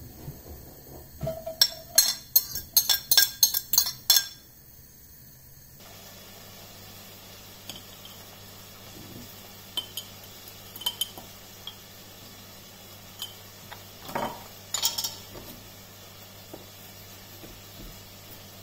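Gas hob spark igniter clicking rapidly, about four clicks a second for a couple of seconds. Later, scattered light taps and knocks from a knife and a glass jar on a wooden chopping board.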